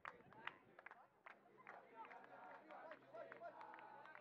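Faint, indistinct voices of players and sideline spectators calling out during a rugby match, with scattered sharp taps. A low steady hum comes in about one and a half seconds in.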